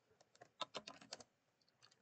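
Faint computer keyboard typing: a quick run of keystrokes from about half a second to just past a second in, as a terminal command is entered.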